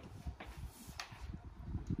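Upper rear panel of a fiberglass Brenderup two-horse trailer being lifted off by hand: a low rumble with two faint clicks from the panel and its fittings.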